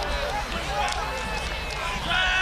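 Ambient noise of a football game picked up by the field microphone: a steady murmur with faint distant voices and shouts from the players and sideline.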